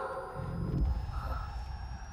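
Horror-trailer sound design: a held eerie tone fading out at the start, a deep rumbling swell about half a second in, and a thin high tone slowly rising.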